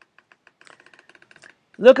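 Faint rapid clicking, about a dozen small clicks a second for roughly a second, then a man's reading voice starting near the end.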